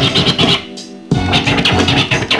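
Turntablist scratching a vinyl record on a turntable: rapid back-and-forth scratches, with a short break of about half a second a little past half a second in before the scratching resumes.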